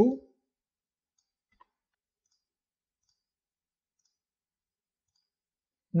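Near silence, broken by one faint computer-mouse click about a second and a half in and a few fainter ticks after it, made while placing points with the Pen tool.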